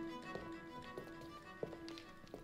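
Quiet background music with held notes, fading, and several footsteps on a stage floor as a few people walk forward.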